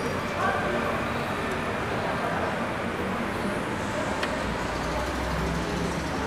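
Steady traffic noise, with faint voices talking in the background near the start and a single light click about four seconds in.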